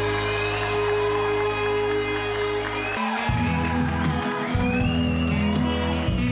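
Live band music: a sustained closing chord rings on, then about halfway through it breaks off and the keyboard-led intro of a new song begins.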